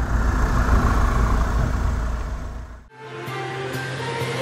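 A low, dense rumble that fades away, then about three seconds in the news programme's outro theme music starts with steady held tones and light ticking beats.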